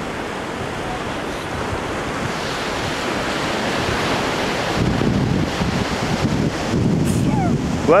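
Atlantic surf washing on a sandy beach, with wind buffeting the microphone in gusts that grow heavier in the second half. Just before the end someone sneezes.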